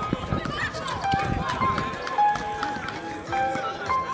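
Live sound of a basketball game on an outdoor hard court: the ball dribbling and feet running, with voices of players and onlookers and music in the background.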